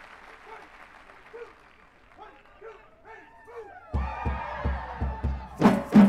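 Crowd applause and cheering dying away. About four seconds in, a drum corps drumline starts playing: low drum beats a few times a second, then sharp snare drum strokes near the end.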